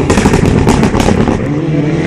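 Toyota Celica GT-Four rally car's turbocharged four-cylinder engine driving hard past, with a rapid run of sharp cracks and pops through the first second. Near the end its steady engine note comes back through.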